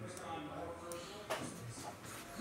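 Faint, indistinct voice in a small room, with one sharp click a little over a second in.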